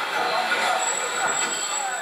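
Reunification Express passenger train rolling slowly past a station platform, with a thin, steady high-pitched squeal from the train joining about a second in.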